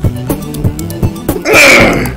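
Beatbox performance: a fast, steady beat of kick-drum-like thuds, about two or three a second, with sharp hi-hat-like clicks over a held low bass tone. Near the end a loud, breathy hiss-like burst lasts about half a second.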